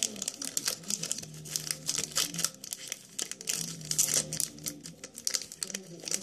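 Foil wrapper of a Pokémon trading card booster pack crinkling and tearing as it is opened by hand. The wrapper gives a dense, irregular run of crackles throughout.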